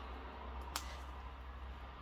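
Faint handling of a reborn doll's clothes as it is dressed, with one sharp click a little before the middle, over a low steady hum.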